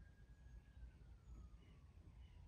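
Near silence: room tone, with a faint single tone that holds and then slides slowly downward.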